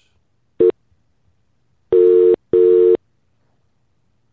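British telephone ringing tone heard down the line while a call rings out: a brief blip, then one double ring (two short rings close together), a steady buzzy tone.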